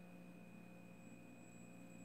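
Near silence: faint room tone with a few steady faint tones.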